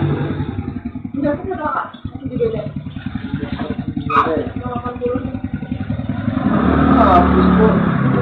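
Motorcycle engine idling with a rapid, even pulse, under indistinct voices at the counter.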